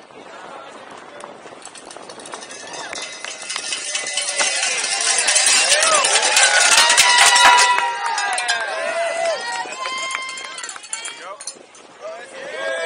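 Spectators lining a downhill mountain-bike course shouting and cheering as the rider goes by, swelling to their loudest about halfway through and then fading, over the clatter and rattle of the bike on the dirt track.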